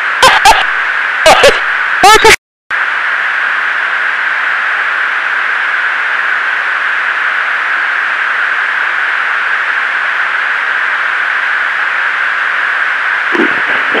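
Steady hiss of an aircraft intercom recording. A few short clipped bits of aircrew voice come in the first two seconds, followed by a brief cut-out to silence; voices return near the end.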